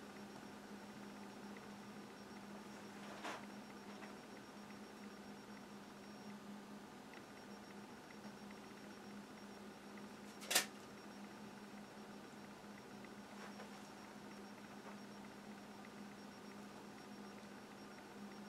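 Quiet room tone with a steady low hum. A faint tick comes about three seconds in, and one sharp click about ten and a half seconds in.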